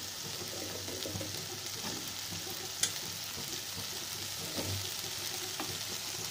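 Par-boiled potato cubes frying in oil in a nonstick pan with a steady sizzle, while a wooden spatula stirs and scrapes them. There is one sharp click about halfway through.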